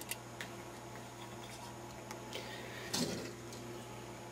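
Light handling sounds as a small stainless-steel plate electrolysis cell is set aside on a towel and another picked up: a faint click soon after the start and a slightly louder knock about three seconds in, over a steady low hum.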